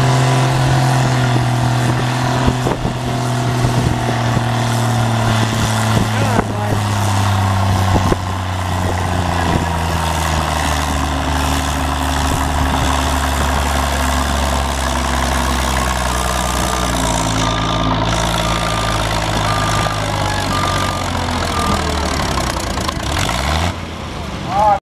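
Cockshutt 40 tractor's six-cylinder engine working hard while pulling a weight-transfer sled, running steadily with its pitch slowly dropping as the load pulls it down.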